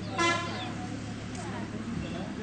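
A short horn toot about a quarter second in, over background voices and a steady low hum.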